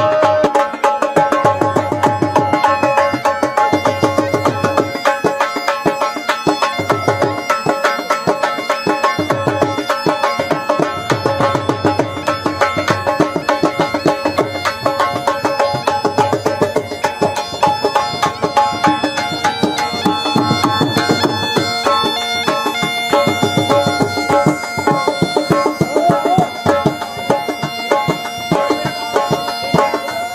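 Bagpipes playing a melody over their steady drones, with a drum beating a fast, steady rhythm underneath.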